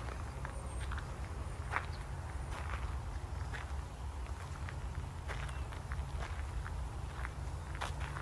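Footsteps crunching on a gravel path at a slow walking pace, about one step a second, over a steady low rumble.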